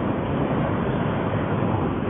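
Steady road and wind noise heard from inside a car cruising at highway speed.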